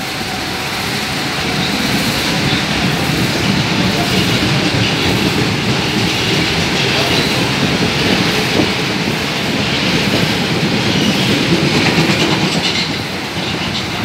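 Mitsubishi subway train departing along the platform, its cars running past close by, the sound easing slightly near the end as the last car goes into the tunnel.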